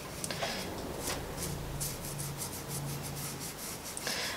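Fingertip rubbing gilding flakes onto a glued chipboard letter on paper: a run of quick, scratchy rubbing strokes as the metal leaf is burnished down and the excess flakes break off.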